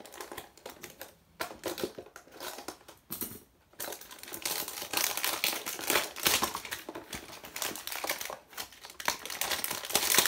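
Packaging of a Highland Mint NHL trading-coin pack being handled and opened: a quick run of small clicks and taps, a brief pause, then denser plastic crinkling from about four seconds in.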